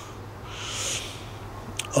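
A man's breath drawn in during a pause in his speech: a soft hiss lasting under a second, then a small mouth click just before he speaks again.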